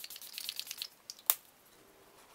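A handheld spray bottle misting the face in a quick run of short, light hissing bursts, about ten a second, that stop about a second in, followed by a single sharp click.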